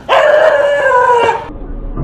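A dog lets out one long howling yelp, its pitch sliding down a little. It stops about a second and a half in.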